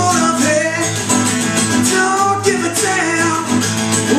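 Hummingbird-style steel-string dreadnought acoustic guitar strummed in chords, in a steady rock rhythm.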